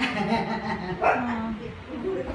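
A dog vocalizing twice, about a second apart.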